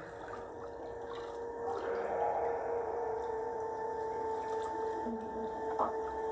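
Bath water lapping and splashing in a foam-filled bathtub, with a steady held tone of background music underneath.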